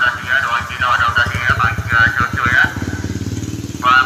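A motorcycle engine running at idle nearby, a low even beat that grows stronger about a second and a half in, with people's voices over it.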